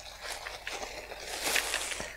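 Thin clear plastic protective film crinkling and rustling irregularly as a cordless ratchet is pulled out of it, loudest about one and a half seconds in.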